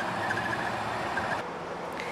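Steady background hiss with a faint, thin high tone that fades out about one and a half seconds in.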